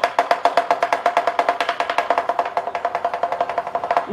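Lion dance percussion playing a fast, even roll of sharp, wooden-sounding strikes, about eight to ten a second, quickening slightly toward the end.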